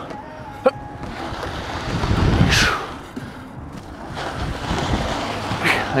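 Steel prowler sled being pulled and twisted across rubber gym flooring, a low scraping rumble mixed with wind on the microphone. There is a click just under a second in and a short falling hiss about two and a half seconds in.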